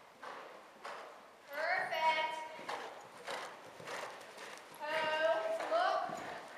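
Hoofbeats of a horse cantering on soft arena footing, a dull thud about every half second. A person's voice calls out twice, about a second and a half in and again near the end, louder than the hooves.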